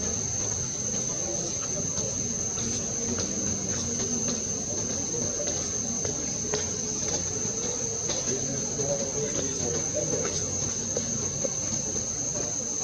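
Steady insect chorus: one continuous high-pitched drone, with a low background rumble and a few faint clicks.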